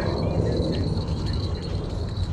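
Steady low rumble of outdoor background noise, with a thin steady high whine over it.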